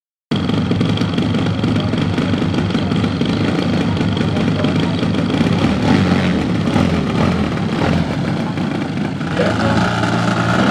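Engine of a large radio-controlled Extra 330SC aerobatic plane running steadily at low throttle. It picks up revs and rises in pitch in the last second or so.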